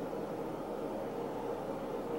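Steady low hiss of room noise with no distinct events.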